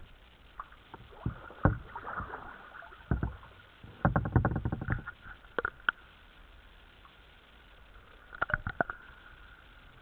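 Kayaks being paddled slowly on still water: scattered paddle splashes and knocks against the plastic hull. A quick run of clatter comes about four seconds in, and another near the end.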